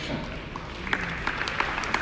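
Audience applause, many hands clapping, picking up about a second in.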